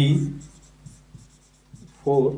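Marker pen writing on a whiteboard in a few short, faint strokes. A man's voice trails off at the start and starts again right at the end.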